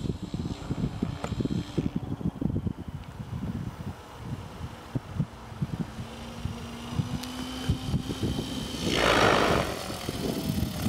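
Wind buffeting the microphone, with an Align T-Rex 700E electric RC helicopter flying in the distance: a faint steady whine comes in about halfway through, then a louder rush of rotor noise near the end.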